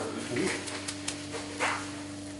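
Gloved hands rubbing coarse salt into a raw ham: a few short, gritty scrapes and light clicks, the strongest about one and a half seconds in, over a steady hum.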